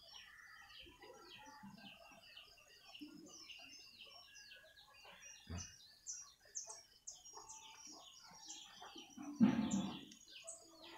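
Birds chirping in the background, many short high chirps following one another. A brief louder noise comes near the end.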